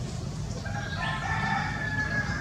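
One long, pitched animal call starting about half a second in and held steady for over a second, over a low steady rumble.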